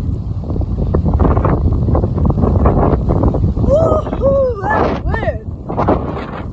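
Wind buffeting the phone's microphone in a loud, continuous low rumble. About four seconds in, a few short wordless vocal sounds rise and fall in pitch over it.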